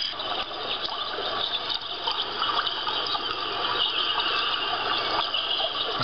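Cloud B Gentle Giraffe sound box playing its 'relax' setting: a steady recording of running water through its small, tinny speaker.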